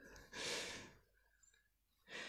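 A man's single breathy exhale, a sigh, about half a second long.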